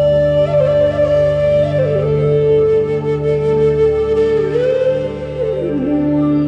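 Bansuri (Indian bamboo flute) playing a slow meditative melody of long held notes joined by slides: a high note, a step down about two seconds in, a short rise and then a falling glide near the end, over a steady low drone.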